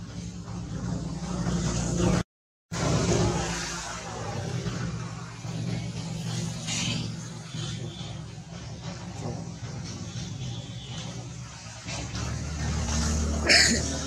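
A motor vehicle engine running with a steady low hum. The sound cuts out completely for about half a second a little over two seconds in, and short higher-pitched sounds come near the middle and near the end.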